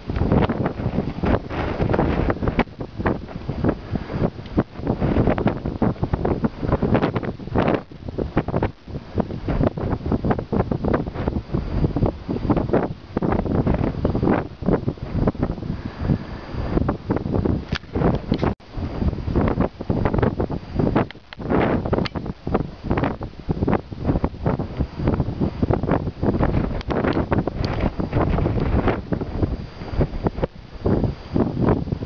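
Gusty wind buffeting the microphone: a loud, low rumble that surges and drops irregularly with each gust.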